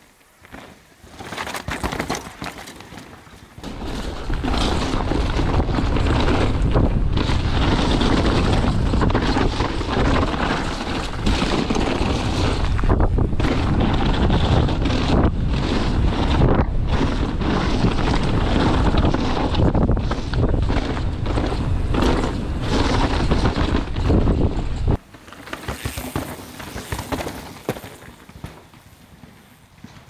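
Wind rushing over a rider-worn camera's microphone as a downhill mountain bike is ridden fast over rough dirt trail, mixed with tyre noise and rattling knocks from the bike. The noise drops away suddenly about 25 seconds in.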